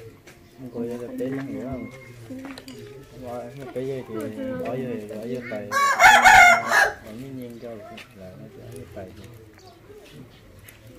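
A rooster crows once, about six seconds in, a loud call lasting about a second over quiet talking voices.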